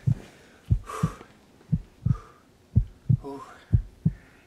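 Heartbeat sound effect: pairs of short low thumps about once a second, lub-dub, with soft breaths between them and a brief voiced gasp a little after three seconds in.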